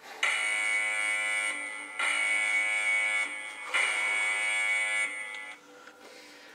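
A phone workout-timer app sounding its buzzer: three long, steady, buzzing alarm tones, one straight after another, marking the end of the workout.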